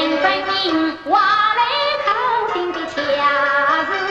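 A woman singing a Yue opera aria in an ornamented, sliding melody over instrumental accompaniment, with a brief break between sung lines about a second in.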